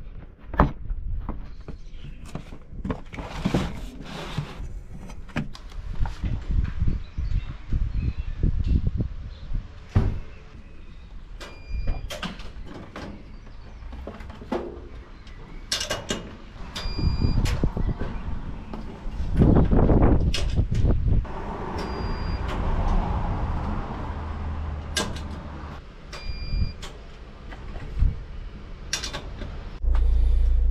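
Handling noises from a parcel delivery run: a string of knocks and clatter from doors, a door's letterbox and a van's sliding side door. Several short electronic beeps sound at intervals, and there is a louder stretch of low rumbling noise about twenty seconds in.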